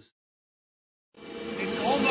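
Silence for about a second, then a CNC router milling an aluminium plate fades in: a steady hum under a loud, even hiss from the cutting.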